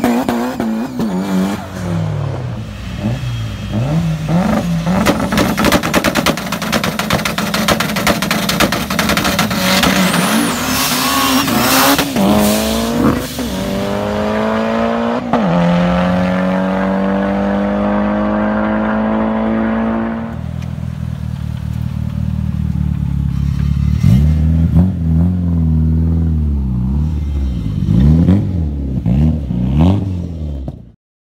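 Car engines at full throttle in a street race, revving up through several gear changes. A long rising pull runs until about two-thirds of the way in and then cuts off suddenly. Near the end, an engine revs up and down in quick blips several times.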